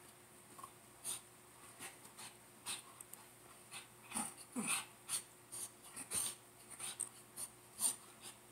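A Shih Tzu making a string of short, sharp noisy sounds at irregular spacing, about two a second, with one brief whine that falls in pitch a little past halfway.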